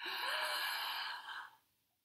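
A woman taking a long, deliberate deep breath in through the mouth, audible for about a second and a half before it fades out.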